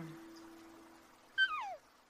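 A dog giving one short whine that falls steeply in pitch, about a second and a half in, over a faint steady hum that fades away.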